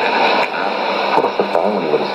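Shortwave AM news broadcast in Arabic from a Sony ICF-2001D receiver's loudspeaker. The signal is weak: a voice comes and goes under steady hiss and static, with a low steady hum.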